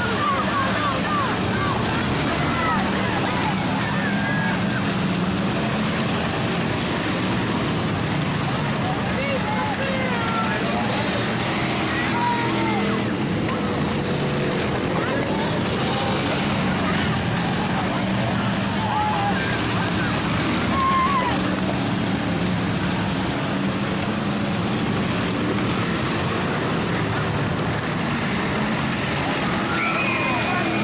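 Race cars' engines running as they lap a dirt oval, a steady drone throughout, with scattered people's voices from the stands over it.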